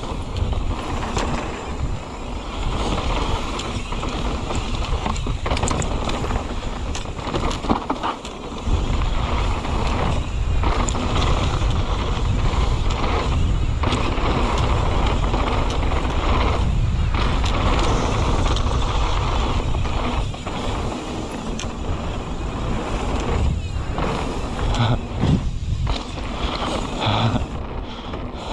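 Mountain bike riding fast down a dirt singletrack: wind rumbling on the microphone over the rolling of the tyres on dirt, with short knocks and rattles from the bike over bumps.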